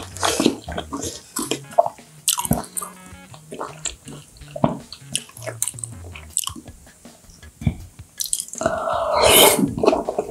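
Close-miked eating of raw yellowtail sashimi: chopsticks tapping on the plate and bowl, and small wet sounds as the slices are picked up and dipped. Near the end comes a loud slurp as a slice is sucked into the mouth, followed by chewing.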